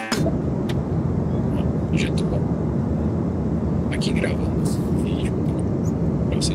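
Steady low drone of an airliner cabin in flight, from engine and airflow noise.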